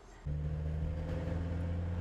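Engine and road noise of a small van heard from inside its cabin while it is driven: a steady low hum that cuts in suddenly about a quarter of a second in.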